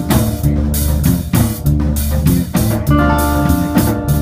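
Live reggae-dub band playing: a deep electric bass line and drum kit keep a steady groove, with guitar, and held chords sound at the start and again near the end.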